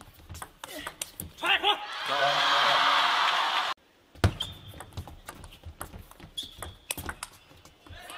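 Table tennis rally: a quick run of celluloid-plastic ball clicks off bats and table for about a second and a half, then the crowd cheering the won point. The cheering cuts off abruptly just before the midpoint, leaving scattered single clicks.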